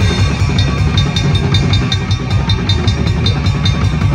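A live band playing loudly, the drum kit to the fore: a fast, dense bass drum pulse, with a steady run of sharp high ticks on a cymbal, about six or seven a second, starting about half a second in.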